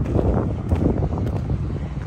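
Wind buffeting the phone's microphone: a steady low, rushing noise.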